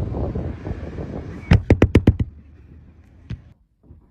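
A quick run of five loud, sharp bangs about a second and a half in, each about a seventh of a second apart, followed by one fainter knock near the end.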